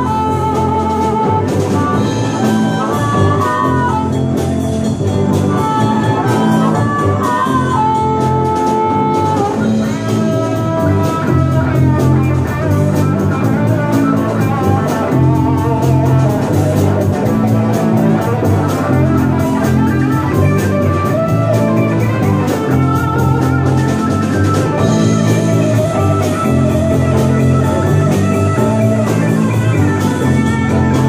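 Blues-rock band playing with guitar and drum kit: a continuous instrumental passage, with a lead line bending notes during the first ten seconds or so.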